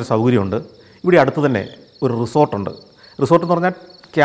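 A man talking in Malayalam in short phrases, with a steady high cricket trill behind the voice.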